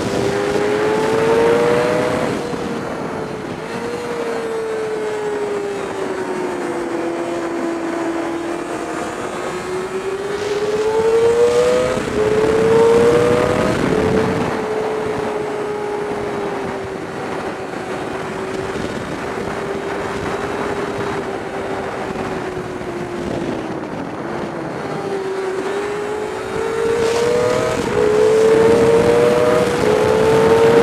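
Sport bike's engine heard from onboard at speed, its pitch rising as it accelerates and dropping in steps at upshifts, at about 2, 12 and 28 seconds in. Between them it falls away and holds steadier as the rider eases off through the turns, with wind rushing over the microphone throughout.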